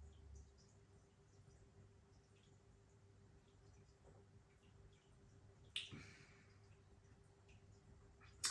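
Near silence: room tone with a few faint ticks and one short, soft sound about six seconds in.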